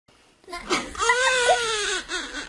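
A baby crying: a couple of short fussing sounds, then one long high wail from about a second in.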